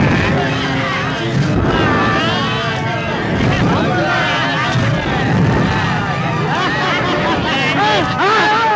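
A crowd of many people screaming and shouting over one another, with a steady low rumble beneath and a crash right at the start.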